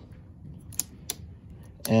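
Key turning in the ignition switch of a Phantom C1 folding electric scooter, making a few light clicks; one twist of the key switches the scooter on.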